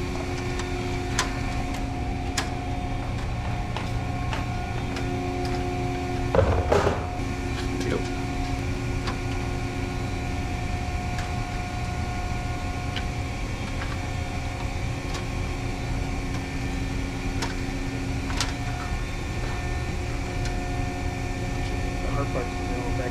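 Steady machinery hum with several fixed tones over a low rumble, broken by a few light metal clicks and one louder clatter about six and a half seconds in, as a fluorescent fixture's sheet-metal cover plate is handled and pushed back into place.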